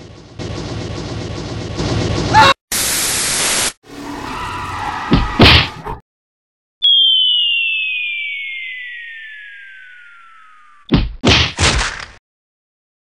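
Cartoon sound effects: a loud train-like rumble, a burst of hiss and a thud, then after a short pause a long whistle falling steadily in pitch, the classic sound of something dropping from a height, ending in a quick run of crashing impacts.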